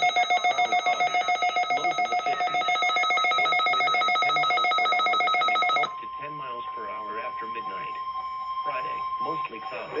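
Midland weather alert radio sounding its alert: a loud, fast-pulsing electronic beep at several pitches, set off by the National Weather Service's Required Weekly Test signal. It stops abruptly about six seconds in and is followed by a quieter stretch with a faint steady tone.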